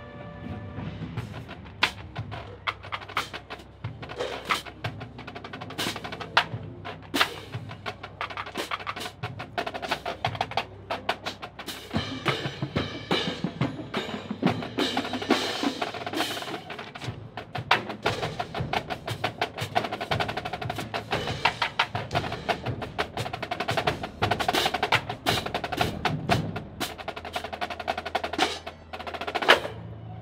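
A marching cymbal line playing pairs of crash cymbals in ensemble rhythm: many sharp crashes and taps with shimmering ring. Under them runs music with a steady low bass line.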